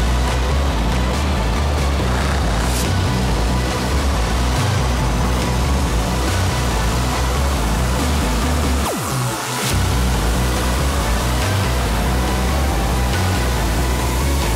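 Background electronic music with a heavy, pulsing bass; the bass drops out briefly with a falling sweep about nine seconds in, then returns.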